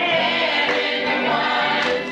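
Gospel vocal group singing together, backed by electric guitars.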